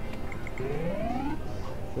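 Video poker machine's electronic sounds: three short high beeps, then a rising electronic tone lasting about a second as a three-of-a-kind win of 15 credits pays out.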